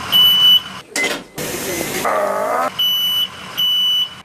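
Three high-pitched electronic alarm beeps from emergency-room medical equipment, each about half a second long: one at the start and two close together near the end. A short burst of voice comes between them.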